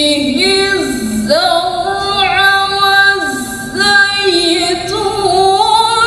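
A young female reciter chants the Quran in the melodic tilawah style into a handheld microphone. She holds long, ornamented notes that waver and glide between pitches.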